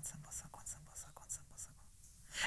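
A man softly whispering a repeated mantra, the syllables growing fainter and trailing off into near quiet near the end.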